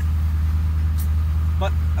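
Ford 6.7L Powerstroke V8 turbodiesel idling steadily, heard from inside the cab, while still cold soon after a cold start at about 4°F. A short click comes about a second in.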